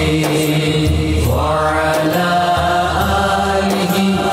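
Islamic devotional singing, the opening of an Urdu manqabat: a solo voice holds long, ornamented notes over a steady low drone, with a new drawn-out phrase starting about a second in.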